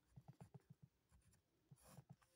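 Faint scratching of a ballpoint pen writing on paper in a string of short strokes, with another brief stroke near the end.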